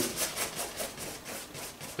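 A bristle paintbrush scrubbing paint onto a toothy stretched canvas in quick back-and-forth strokes, about six or seven scratchy strokes a second.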